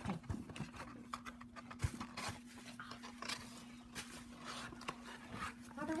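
Cardboard trading-card box and its plastic wrapping handled by hands in plastic gloves: a run of small, irregular crinkles, taps and scrapes.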